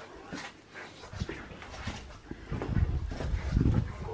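A dog making soft whimpering and breathing sounds close by, with irregular low thuds.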